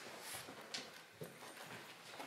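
A few faint footsteps and small knocks, spaced about half a second apart, as people walk to and from a lectern.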